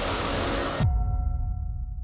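Nammo hydrogen-peroxide/solid-fuel hybrid rocket motor firing on a test stand, a loud, even rushing noise that cuts off suddenly a little under a second in. A low rumble with a few faint held tones follows and starts to fade.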